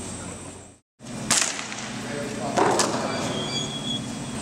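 A brief drop-out at an edit, then two sharp cracks about a second and a half apart over the steady hum of a large indoor arena.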